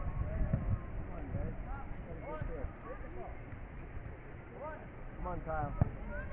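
Distant voices of players and spectators calling out across a soccer field, over a low rumble of wind on the microphone. A single sharp thump comes near the end.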